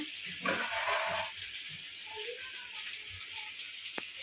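Steady, faint sizzling of food frying in a steel kadhai on a gas stove.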